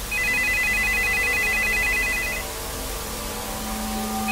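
An electronic telephone ringer warbles rapidly between two high tones for about two and a half seconds, then stops, over a low steady hum.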